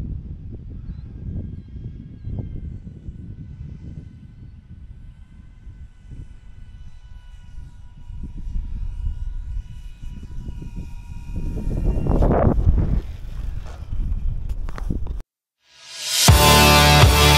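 Whine of the E-flite Beechcraft D18's twin electric motors and propellers in flight, heard as a steady multi-note hum that sags slightly in pitch, under wind rumble on the microphone. A louder rushing stretch comes about twelve seconds in, and the sound cuts off suddenly near the end.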